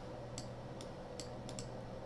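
About five quiet clicks of a computer mouse, spread over two seconds, over a low steady room hum.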